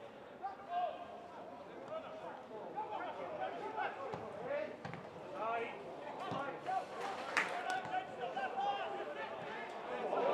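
Footballers' shouts and calls ringing around an empty stadium during open play, with a couple of sharp thuds of the ball being kicked in the second half.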